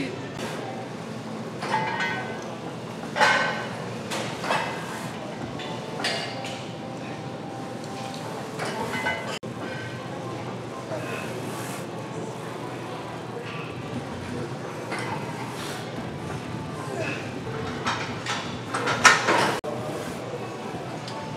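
Short, scattered bursts of indistinct voices over steady background music.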